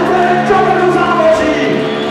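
A rock band playing live, with the lead singer singing over steady held low notes from the band, heard loudly through the hall's PA.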